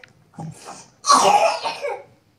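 A person coughing: a smaller cough about half a second in, then a louder run of coughs over the second half.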